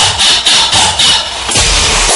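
Electronic dance track playing loud, with a rasping, saw-like effect repeating about three times a second over a low bass beat.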